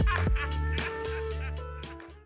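Lo-fi electronic beat fading out: drum hits over a held bass note, growing steadily quieter.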